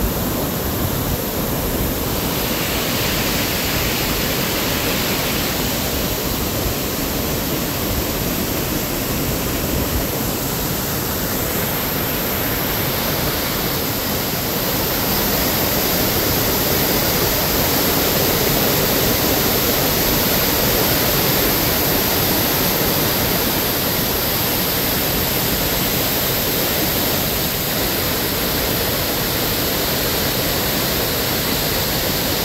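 Waterfall pouring into its plunge pool: a steady rush of falling water, growing a little louder about halfway through.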